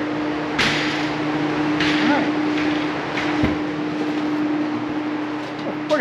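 A steady low hum under an even rushing hiss in a tiled room. The hiss starts with a knock about half a second in, and a few faint knocks follow.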